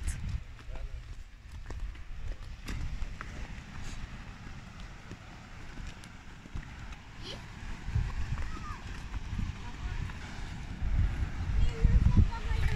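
Wind rumbling on a phone's microphone during a walk, with scattered footsteps on a gritty path and faint voices of people nearby.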